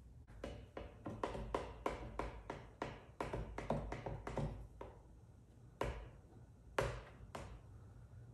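Plastic squeegee swiped in quick short strokes over wet paint protection film on a car's mirror cap, about four strokes a second for five seconds, then a few slower strokes near the end. It is pushing out the slip solution and air bubbles to lay the film down.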